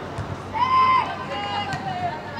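A woman's loud, high-pitched shout during a football match: one call about half a second in, held briefly and then dropping, followed by a shorter call.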